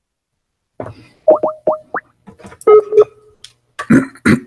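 Skype sound effects from a computer: silence, then about a second in a quick run of four rising bubbly pops, followed by a short two-tone signal as a call is placed. A brief rough noise near the end.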